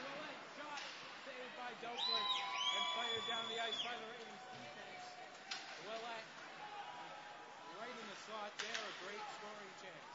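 Ice hockey arena sound: spectators' voices near the microphone and sharp knocks of sticks and puck. About two seconds in comes a shrill, steady whistle blast of several pitches lasting about two seconds, the loudest sound here.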